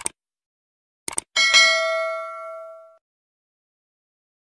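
Subscribe-button animation sound effect: a short click, then two quick clicks about a second in, followed by a bright notification-bell ding that rings out and fades over about a second and a half.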